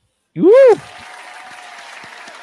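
A short, loud whoop that rises and falls in pitch, then steady faint applause from a sound effect, with a few thin whistle-like tones in it.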